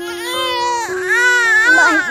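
A baby crying in two long wails, the second louder and starting about a second in.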